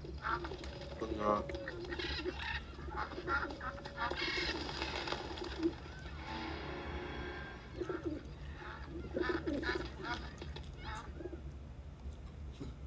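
Pigeons cooing, played fairly quietly from a cartoon on a TV.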